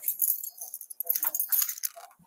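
A ring of keys jangling and clinking in quick, irregular bursts as a key is worked into a doorknob lock.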